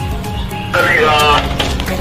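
Background music with a steady beat; about three-quarters of a second in, a man bursts into loud, wavering laughter over it.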